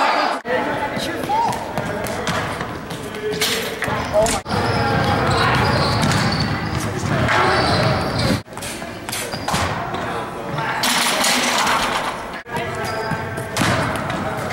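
Echoing large-gym ambience: background voices and chatter with scattered thuds and bounces. The sound cuts out for a moment about every four seconds.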